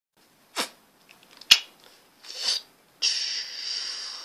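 Breathy noises close to a microphone: a short sniff-like sound, a sharp click about a second and a half in, then a long hissing breath starting about three seconds in.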